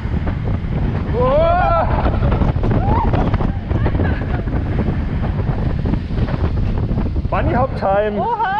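Wind buffeting the onboard camera microphone over the rumble of a steel wild mouse roller coaster car running along its track through tight turns. A rider gives short exclamations about a second in and again near the end.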